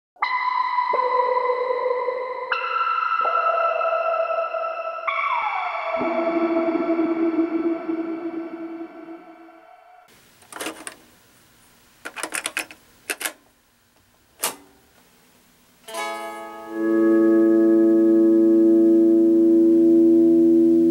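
Ambient electric guitar improvisation through effects pedals: layered sustained notes enter one after another, one note sliding downward about five seconds in, and the sound fades out around ten seconds. A few sharp clicks follow, then a loud sustained drone chord swells in near the end.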